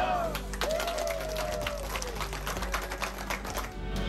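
A small group of people clapping, a quick irregular patter that stops near the end, with a drawn-out voice calling out over it in the first couple of seconds and soft background music underneath.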